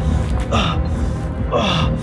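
A man breathing hard, two heavy gasping breaths about a second apart, over background music.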